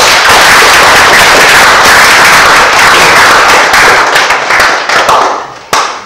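Audience applauding: loud, dense clapping that dies away about five seconds in, with a last short burst of claps near the end.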